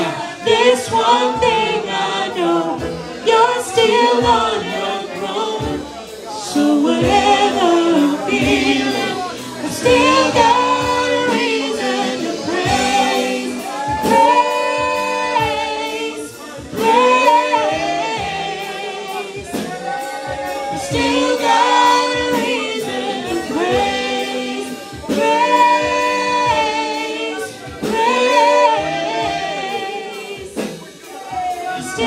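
Live gospel worship song sung by several voices together, a praise team leading a congregation.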